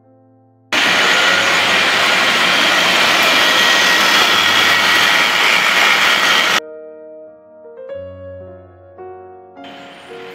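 Textile thread-winding machine running loudly, bobbins spinning, for about six seconds; the sound starts and stops abruptly. Soft background music plays before and after it.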